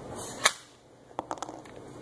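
Lever-style corkscrew's chrome lever being pulled up, with one sharp click about half a second in and a few faint ticks after. This is the stroke that pushes the pulled cork back off the screw.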